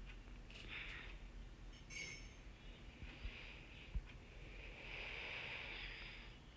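Faint sounds of a spoon stirring a thick lentil and tomato mixture in a metal pot on the stove: soft scraping and sizzle, with a few light clicks.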